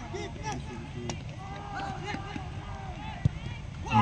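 Low chatter of spectators' voices, broken about three seconds in by a single sharp thud: a football struck hard for a penalty kick.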